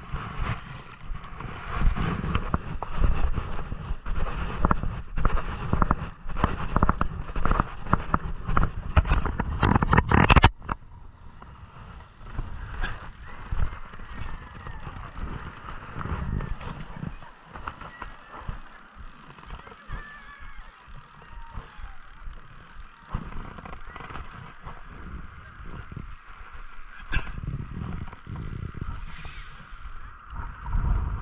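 Wind rumbling on the microphone with handling knocks, loud for about ten seconds and then cutting off suddenly to a quieter, steady rush of outdoor noise.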